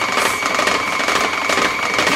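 KitchenAid tilt-head stand mixer running steadily with a constant motor whine, its beater churning powdered sugar, meringue powder and water into stiff royal icing.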